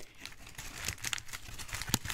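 A brown paper lunch bag being twisted by hand, its paper crinkling and crackling irregularly, with one sharper crack near the end.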